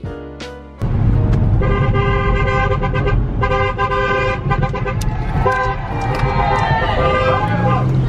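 Car horn sounding in three long, loud blasts starting about a second in, over heavy wind rumble on the microphone. Voices join toward the end.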